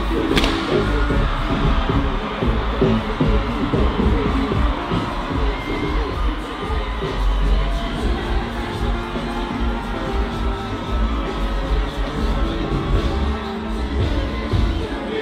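Live concert sound: a track played loud through a festival sound system with heavy bass, and a large crowd cheering over it. A single sharp crack about half a second in.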